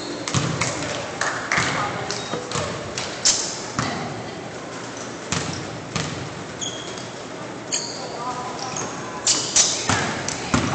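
A basketball bouncing on a hardwood gym floor, with irregular thuds and several short, high sneaker squeaks.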